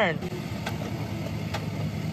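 Pickup truck engine running steadily at low speed while the truck is slowly maneuvered, a low even hum with two faint clicks.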